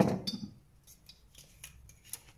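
Kitchen handling noise: a dull knock at the start that dies away within about half a second, then a few faint light clicks.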